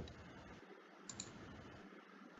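Near silence: faint room tone, with one small click about a second in.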